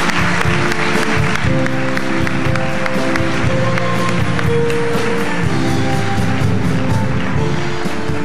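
Live stage band playing held chords over a light beat, with audience applause that fades out over the first couple of seconds.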